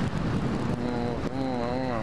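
Airflow buffeting a glider-mounted camera microphone in flight: a steady low rumble. Over it, from about two-thirds of a second in, a man's voice makes long, drawn-out wordless hums that waver in pitch.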